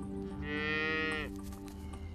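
A calf moos once, a call of about a second that drops in pitch as it ends, over soft background music.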